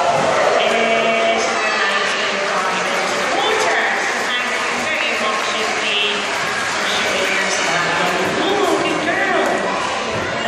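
Indistinct chatter of an audience in a large indoor hall, many voices overlapping with no single clear talker.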